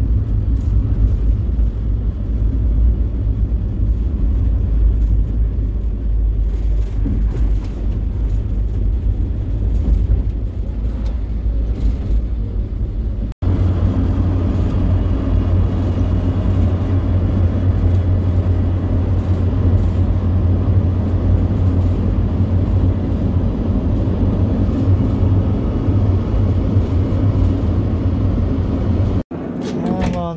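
Car cabin noise heard from the back of a moving car: a steady low road and engine rumble. It cuts off abruptly twice, about 13 seconds in and about a second before the end.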